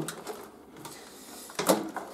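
Wire cutters snipping through old wiring in an organ cabinet: low handling rustle, then one sharp snip about one and a half seconds in.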